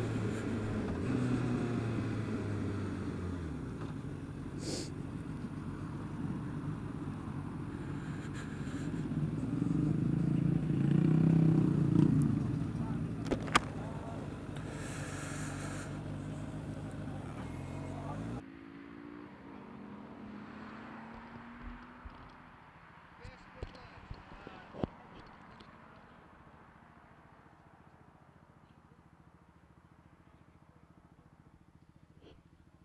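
Motorcycle engine running as the bike slows and rolls in among parked bikes, with wind and road noise. It cuts off abruptly about eighteen seconds in. The sound then drops to a faint background with a few sharp clicks.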